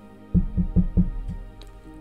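A quick run of about five dull knocks of a fist on a desk, like a knock at a door, with faint background music underneath.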